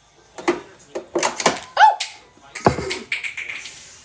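Bottles and containers knocking and clattering as they are handled on a refrigerator's door shelves: a string of short knocks, with one heavier thump a little under three seconds in.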